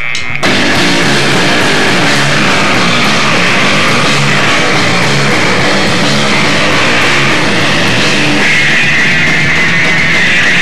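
Live rock band, electric guitar and drum kit with cymbals, playing loud; the full band comes in abruptly about half a second in.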